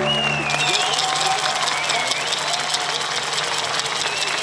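A folk band of fiddles, accordion and double bass ends its final chord in the first second, and the audience breaks into steady applause, with a few high calls over the clapping.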